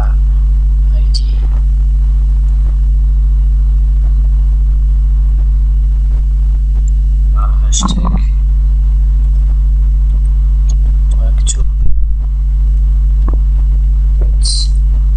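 Loud, steady low electrical mains hum picked up in the microphone's recording chain, with a few brief faint sounds around the middle and a short pop near the end.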